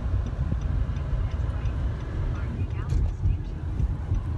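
Car cabin noise while driving: a steady low rumble of engine and tyres on the road, with faint, evenly spaced ticks.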